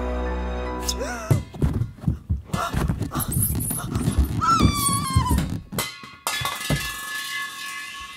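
Film soundtrack: a low, tense score drone gives way about a second in to a rapid series of heavy thumps and knocks, with a high tone sliding downward over them, all cut off abruptly near the end by sustained musical tones.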